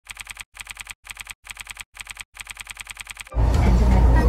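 Typing sound effect: quick keystroke clicks in six short runs with brief pauses, as title text is typed out. Near the end it cuts suddenly to the louder, steady low rumble of a moving high-speed train heard from inside the cabin.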